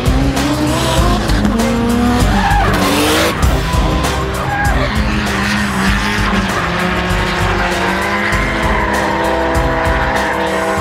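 Drift cars sliding at speed: engines revving up and down and tyres squealing, mixed with background music.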